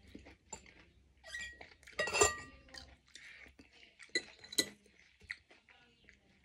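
Metal spoon and fork clinking against a ceramic soup bowl: a few separate, briefly ringing clinks, the loudest about two seconds in.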